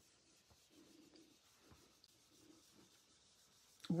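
Faint, soft brushing of a round dome blending brush swirled over cardstock, blending ink onto the paper.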